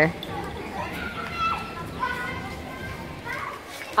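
Children playing and screaming some way off, high shrieks and calls over a steady background murmur.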